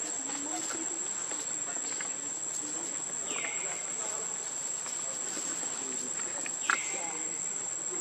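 Steady high-pitched drone of insects, with a short falling call heard twice, about three seconds apart.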